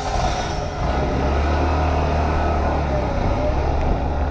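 Honda CH80 Elite scooter's small single-cylinder engine running as the scooter pulls away under throttle, a steady low hum that steps up about a second in.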